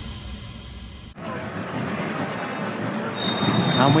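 The tail of intro music breaks off about a second in, giving way to open stadium ambience with a light crowd murmur. Near the end the referee blows a short, steady whistle to start the match at kickoff.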